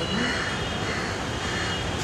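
Steady rumbling background noise with faint, indistinct voices of people talking in the distance.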